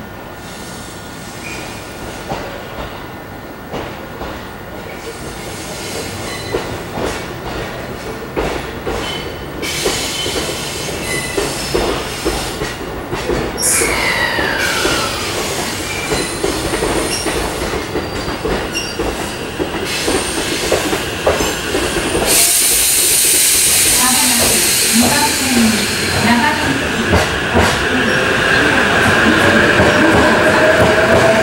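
E353 series electric train moving slowly along the platform, its wheel and rail noise growing steadily louder. A brief falling squeal comes about halfway through, a loud hiss sets in about three-quarters of the way through, and a rising whine is heard near the end as the cars pass close by.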